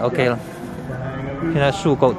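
Speech only: two short voiced utterances, a question and a reply, over quiet background music.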